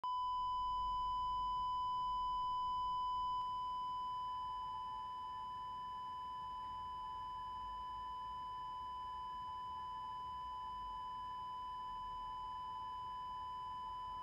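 Patient monitor's flatline alarm: one continuous high beep without a break, the sign that the heart has stopped. A few seconds in it gets slightly quieter and a second, slightly lower steady tone joins it.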